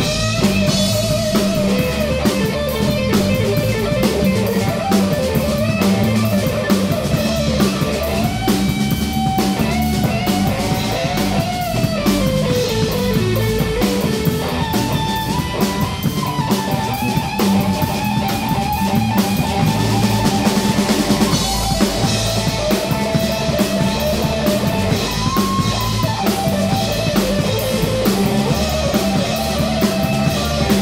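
Live rock band of electric guitar, bass guitar and drum kit playing an instrumental passage, a lead electric guitar line with bent notes over a steady bass and drum groove.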